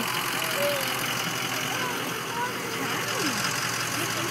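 School bus engine idling steadily, with faint voices over it.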